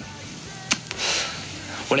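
A pause in speech filled by a low steady hiss, with a single sharp click about two-thirds of a second in. A man's voice starts at the very end.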